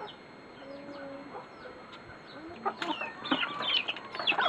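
Chickens clucking and calling, with small birds chirping; the calls get busier and louder in the last second and a half.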